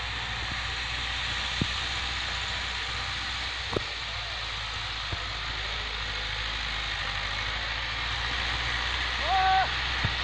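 Distant farm tractor's diesel engine running steadily as it tills a field, a low even hum under a hiss of outdoor noise. A short pitched call sounds near the end.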